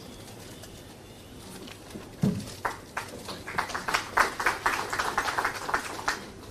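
A dull thump, then a small group of people clapping, irregular and getting denser toward the end.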